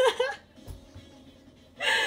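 A young woman laughing: a short voiced laugh at the start, then a loud, breathy gasp of laughter near the end. A faint low thump comes a little under a second in.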